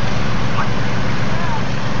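Steady rush of shallow river water running over stones, with a heavy rumble of wind buffeting the microphone. Two faint short calls sound about half a second and a second and a half in.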